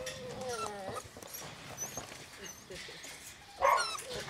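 English setter puppies whining at a kennel fence, with wavering pitched whimpers in the first second and faint high squeaks after. A short, louder yip comes near the end.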